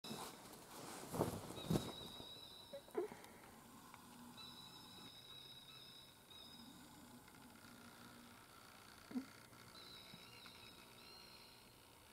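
Handling noise from a handheld camera: a few sharp knocks and bumps as it is swung around, the loudest two close together about a second in, and another near the three-second mark. Between them a faint high steady whine starts and stops several times.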